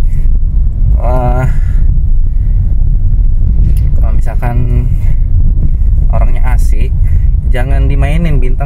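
Steady low rumble of a car heard from inside the cabin, with a man talking in short phrases over it.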